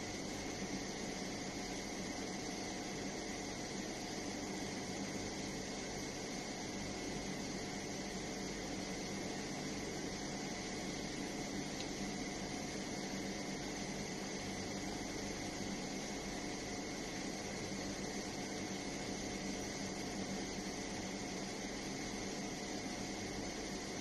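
Steady room noise: an even hiss with a constant machine-like hum, as from a fan or air conditioner running, unchanging throughout with no distinct events.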